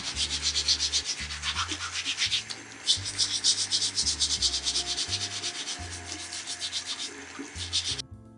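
A brush scrubbing the plastic of a dyed lacrosse head under a running tap, scouring off black webbing spray that Goof Off has loosened. The strokes are quick and scratchy, several a second, with a short break near the three-second mark.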